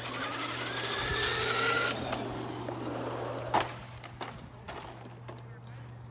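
Electric motors of two brushed-motor Traxxas 2WD RC trucks whining, rising in pitch as they accelerate hard away for about two seconds, then fading with distance. A single sharp knock comes about three and a half seconds in, and a steady low hum runs underneath.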